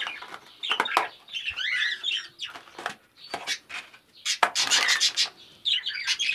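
Caged budgerigars chirping and chattering in short, rapid calls, mixed with clicks and a clatter a little over four seconds in from plastic food tubs being handled and set into the cages.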